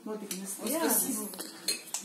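Plates and cutlery clinking as dishes are handed around a table, with a couple of sharp clinks near the end, over quiet voices.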